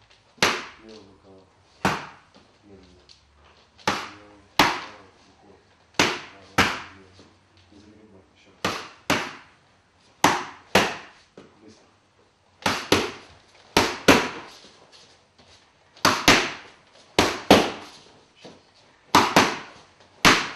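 Boxing gloves punching leather focus mitts: about twenty sharp smacks, mostly in pairs with some quick runs of three or four, each ringing briefly in the hall.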